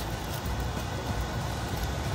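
Steady low hum with an even hiss: background kitchen noise.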